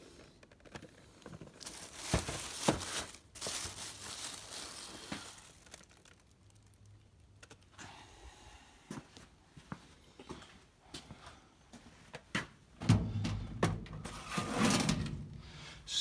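Handling noise from a boxed die-cast model car and a plastic bag: rustling in a few bursts, about two seconds in, again around four seconds, and near the end, with light knocks and clicks in between.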